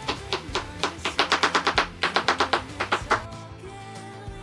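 Kitchen knife slicing mushrooms on a cutting board: a fast run of sharp chopping taps, about six a second, that stops about three seconds in. Background music plays throughout.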